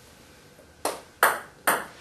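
Table tennis serve: a celluloid/plastic ball struck by the bat and bouncing on the table, heard as three sharp ticks about 0.4 s apart starting near the middle, the later two loudest. The serve is short, the ball double bouncing on the far side of the table.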